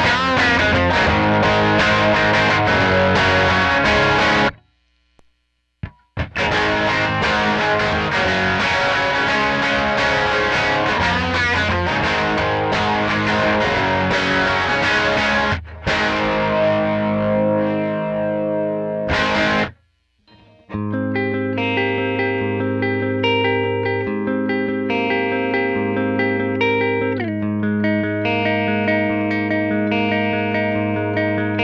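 Electric guitar (Gibson Les Paul) through a Line 6 POD amp model and a Neunaber Chroma stereo chorus pedal, giving a thick chorused tone. Driven chords are strummed with brief breaks about five seconds in and near two-thirds through, then a passage of sustained picked notes and chords.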